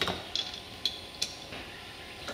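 A few light, sharp metallic clicks as a can-tap valve is threaded onto a can of R-134a refrigerant.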